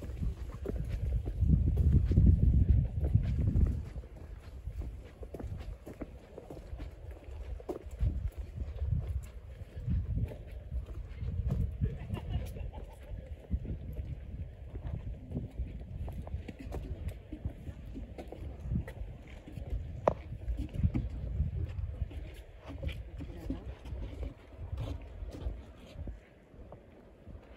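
Footsteps on a paved path with a gusty low rumble of wind on the microphone, loudest in the first few seconds.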